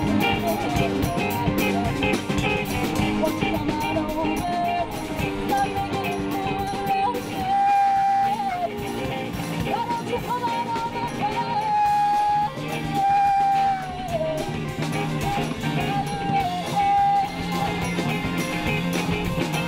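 A live band playing with electric guitar and drum kit. In the second half, a melody line of long held notes, each bending down at its end, sits over the band.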